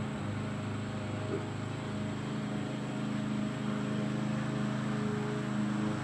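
A steady low machine hum at an even pitch.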